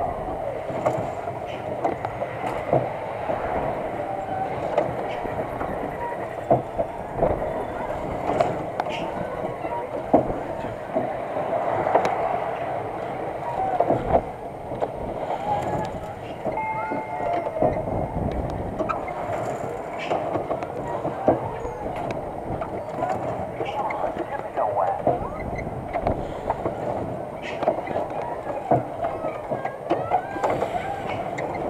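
Spider amusement ride running: the ride car rattles and clanks steadily as it spins, with many sharp knocks scattered through, and voices underneath.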